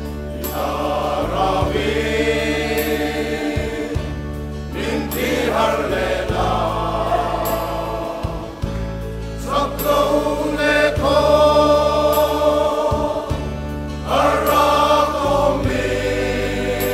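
A group of men singing a gospel hymn together, with sustained low bass notes underneath that change every second or two.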